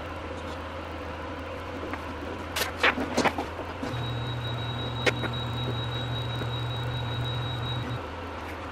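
Mankati 3D printer's stepper motor running for about four seconds and stopping suddenly, a steady hum with a thin high whine, as it drives the print bed upward. Before it come a few clicks and knocks of hands handling the printer's parts, all over a constant low hum.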